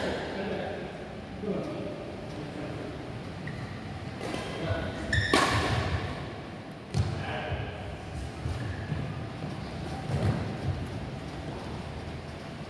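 Badminton rackets striking a shuttlecock in a rally: three sharp hits a second or more apart, the loudest about five seconds in, with thuds of footwork on the court.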